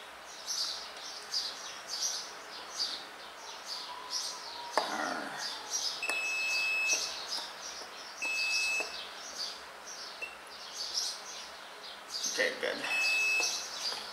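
Multimeter continuity beeper sounding three times, each a steady high beep under a second long, as the test leads touch points on a freshly soldered circuit board; the last beep is the loudest. Constant high chirping runs underneath.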